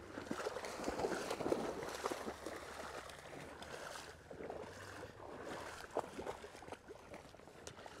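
Feet wading through shallow floodwater: irregular sloshing and splashing steps mixed with the swish of dry weed stems brushing past, louder in the first half.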